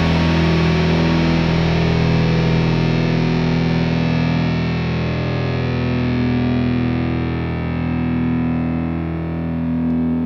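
Grunge rock instrumental passage: a distorted electric guitar chord, struck just before, rings on through effects while its brightness slowly fades, with slow swells in volume.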